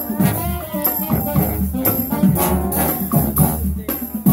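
Live college marching band playing: trombones, trumpets, saxophones and sousaphones over marching drums with a regular beat.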